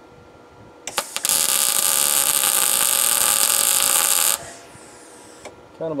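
Wire-feed (MIG) welder laying a heavy tack weld on steel plate: the arc strikes with a couple of pops about a second in, runs as a steady sizzle for about three seconds, then cuts off suddenly.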